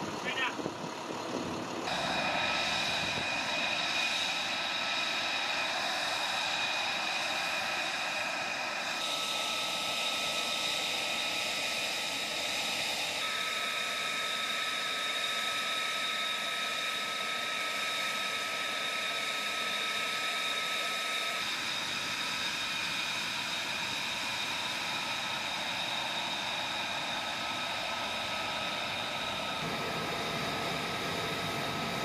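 Steady high-pitched turbine whine of jet aircraft and ground equipment on a flight line, with several sustained tones over a rushing noise. The tone shifts abruptly a few times.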